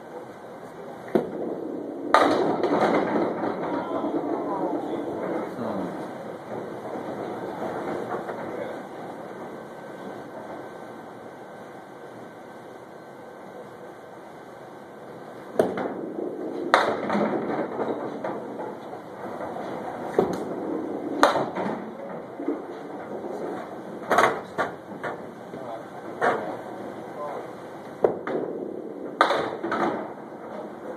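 Candlepin bowling alley sounds: a ball rolling down a wooden lane, then a run of sharp knocks and clatters of balls and pins, with a steady hubbub of the hall underneath.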